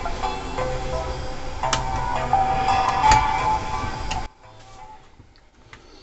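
Music from a cassette Walkman playing through one speaker of an opened 1990s Sharp boombox, fed into the cut audio-signal wires as a test: the channel works. The music cuts off suddenly about four seconds in.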